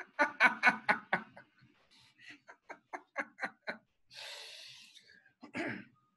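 Laughter over a video call, a rapid run of short ha-ha bursts for about four seconds, then a long breathy exhale and one more burst near the end.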